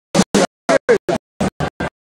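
Live rock band music cut into short, irregular bursts, about four a second, with dead silence between them, giving a stuttering, scratch-like sound.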